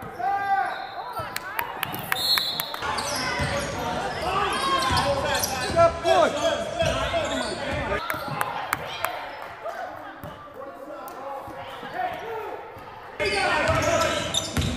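Gym sounds of a basketball game in play: the ball bouncing on the hardwood court, with short squeaking glides and the voices of players and spectators carrying through the hall.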